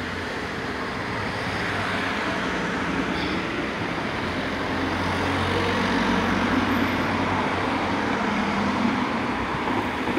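Street traffic: a steady wash of passing vehicles, with a low engine rumble that swells in the middle and eases off near the end.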